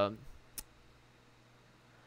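The tail of a man's drawn-out 'uh' fades out, then a single sharp click comes about half a second in, followed by faint room tone.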